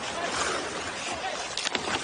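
Ice hockey arena crowd noise during live play, a steady murmur, with one sharp knock from the ice about one and a half seconds in.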